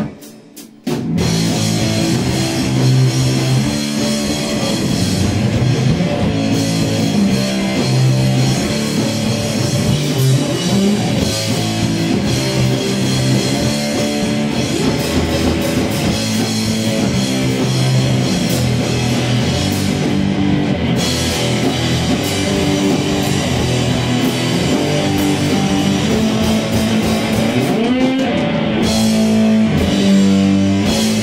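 Punk rock band playing live: distorted electric guitar and drum kit, loud. After a break of about a second at the start, the band comes straight back in and keeps playing.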